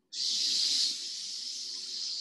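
A long, steady "sss" hiss breathed out through the teeth on an exhale, made to activate the navel core. It is loudest for about the first second, then eases off a little and is held on.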